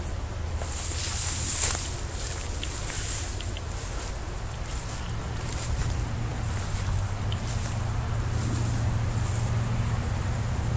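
Steady low rumble of distant road traffic, growing slightly louder near the end, with light rustling and a sharp click about one and a half seconds in.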